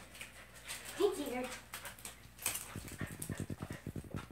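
A dog close by gives a short whining, wavering call about a second in, followed near the end by a fast, even run of soft pulses from the dog.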